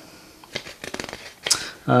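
Hands handling a sheet of paper: light rustling and small scrapes, with one sharper brushing sound near the end.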